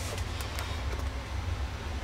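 Steady low hum with a faint even hiss and no distinct events: background noise.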